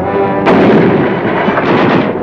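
Battle sound of gunfire with a heavy mortar or artillery blast about half a second in, followed by a continuous din of firing.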